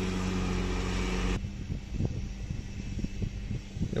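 A motorized backpack mist sprayer's small engine running at a steady pitch. It cuts off abruptly about a second and a half in, leaving a quieter, uneven low rumble.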